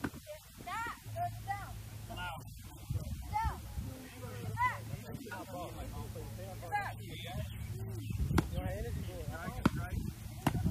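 Voices shouting and yelling during Redman attack training, over a steady low hum, with two sharp strikes near the end, each a single crack, that fit a baton hitting the padded Redman suit.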